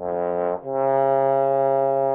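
Bass trombone playing a short note, then a held C in the staff on the F trigger with the hand slide all the way in. Left uncorrected, the C is quite sharp, not a true perfect fifth above the low F.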